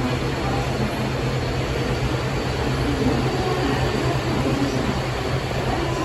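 Steady low rumble and hum on an underground metro platform, typical of a train approaching through the tunnel before it comes into view.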